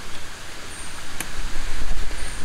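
Outdoor hiss with a low rumble of wind on the microphone that builds toward the end, one faint click a little past one second in, and a faint high chirp.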